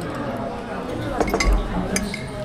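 Cutlery clinking against plates a few times in the second half, over murmured voices at the table.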